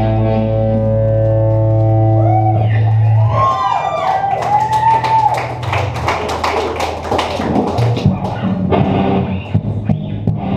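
Live rock band on electric guitars, bass and drums ending a song: a held, ringing guitar-and-bass chord breaks about two and a half seconds in into guitar feedback swooping up and down over repeated cymbal crashes, which thins out near the end.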